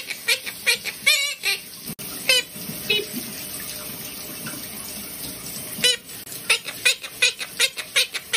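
Monk parakeet (quaker parrot) repeating mimicked "bacon, bacon" in quick talking syllables, about three a second, falling silent for a few seconds in the middle over a steady hiss, then starting the "bacon" run again.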